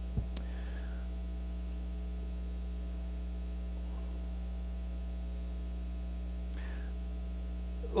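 Steady electrical mains hum in the audio feed: a low, constant buzz with several fixed overtones. There is one faint click just after the start.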